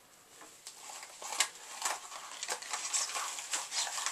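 Paper Christmas cracker being handled just after it has been pulled open: soft, irregular paper rustling and crinkling with small ticks, starting about half a second in.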